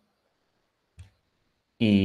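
Near silence with one brief, faint click about a second in; a man's voice starts speaking near the end.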